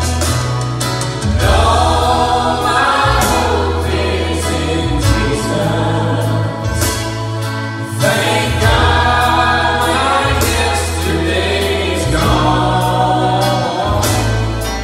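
A mixed group of men and women singing a gospel worship song together into microphones, backed by a live band with keyboard, whose low bass notes change every couple of seconds.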